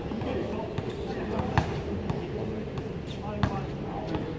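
A basketball bouncing on an outdoor hard court: a few separate sharp thuds, the loudest about one and a half seconds in.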